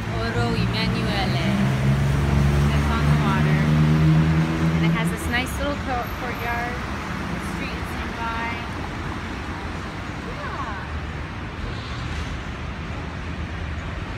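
City street traffic: a nearby vehicle's engine running loudest over the first five seconds, then the steady noise of passing cars.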